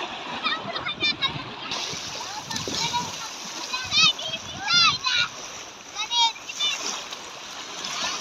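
Shallow sea water splashing and washing around people wading, with children's high-pitched squeals and calls over it. The loudest squeals come about four and five seconds in, with another around six.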